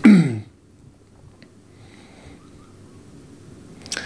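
A man's voice makes one short, loud non-speech sound, falling in pitch, right at the start. After it there is only faint room hiss.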